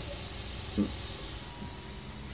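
Steady whir and hiss of a Prusa i3 3D printer's cooling fans, with a faint constant high whine.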